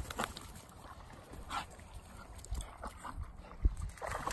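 Spaniel puppies giving a few short yips and whimpers, with a low thump near the end.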